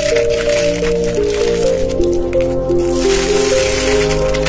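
Foam-bead slime squeezed and stretched by hand, squishing with a dense crackle of small pops, over background music playing a simple stepping melody.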